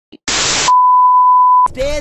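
TV-static sound effect: a burst of hiss for about half a second, then a steady high-pitched beep lasting about a second, the louder of the two.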